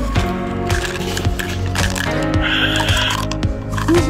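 Background music with a steady beat, and a short crackle about two and a half seconds in.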